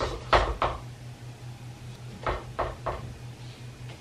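Clothes hangers clacking on the metal rail of a clothing rack as they are pushed along and set in place: a few sharp clacks at the start and three more in quick succession about two seconds in.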